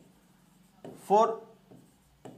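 A stylus writing by hand on an interactive touchscreen board, with faint short strokes against the glass. A man says one short word about a second in, louder than the writing.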